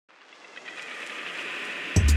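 A swell of noise growing steadily louder from silence, an intro riser effect, broken off near the end by a loud electronic music hit with heavy bass.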